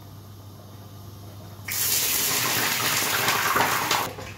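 About halfway through, liquid hits a hot frying pan on a gas hob and sizzles and boils up loudly with a steady hiss. The hiss drops away suddenly near the end.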